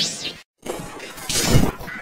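Effect-distorted audio of the Klasky Csupo logo: a short burst, a sudden cut to silence, then a noisy breaking crash, loudest about one and a half seconds in, as the logo's letters smash apart.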